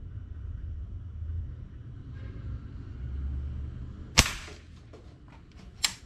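A custom G3 PCP air rifle in 5.5 mm firing a single shot about four seconds in: a sharp crack with a brief tail. A second, quieter sharp click comes near the end.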